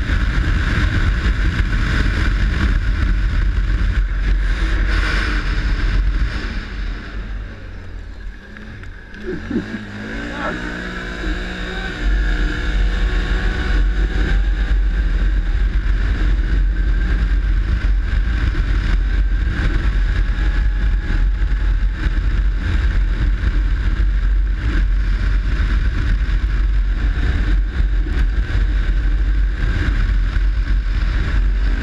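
ATV engine running under heavy wind buffeting on the microphone. About six seconds in the wind drops away and the engine is heard more plainly, revving up with a rising pitch around ten seconds, before the loud wind rumble returns at speed.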